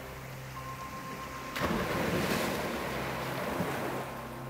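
Sea surf: a loud rush of breaking waves sets in suddenly about one and a half seconds in and holds to the end, over a faint steady background drone.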